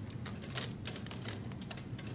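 Hands pushing and pulling drapery fabric along a curtain rod to set the folds: soft fabric rustles with irregular light clicks, about four a second.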